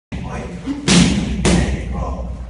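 Two hard strikes landing on training pads, about half a second apart, each a sharp thud with a short ring after it.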